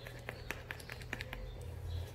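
A spoon stirring thick cake batter in a stainless steel bowl, folding in sifted flour and baking powder: a string of light, irregular clicks and taps of the spoon against the metal.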